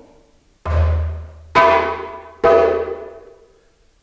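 Djembe struck by hand three times about a second apart, sounding its three basic notes: a deep bass that booms on, then a sharp, bright slap, then an open tone, each ringing out and fading.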